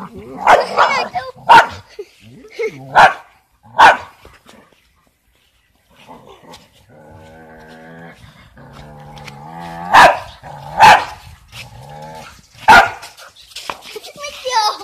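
A dog barking at a rooster in short, sharp barks: a quick run of them in the first four seconds, then three loud ones near the end. Between them, after a brief pause, comes a quieter, drawn-out, steady-pitched sound.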